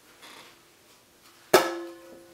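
A metal frying pan struck once, about one and a half seconds in, ringing on with a couple of steady tones that fade away.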